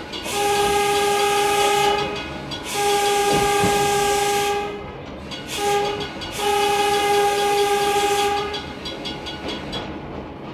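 Electric railcar's horn, heard from inside the car, sounding the grade-crossing signal: two long blasts, one short, one long. It warns of the car's approach to a road crossing.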